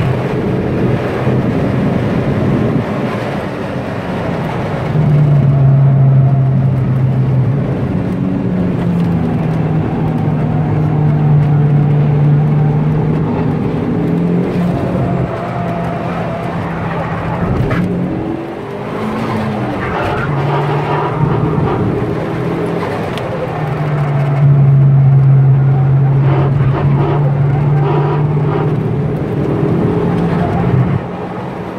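Turbocharged Hyundai Tiburon 2.0-litre four-cylinder engine running hard on track, heard from inside the cabin over road and wind noise. The engine note holds steady under load, swells louder in two long stretches of full throttle (early on and again near the end), and wavers and dips about two-thirds of the way through as the car slows for a corner.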